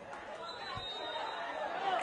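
Faint, jumbled chatter of scattered voices in the stadium. A faint, thin high tone is heard about half a second in.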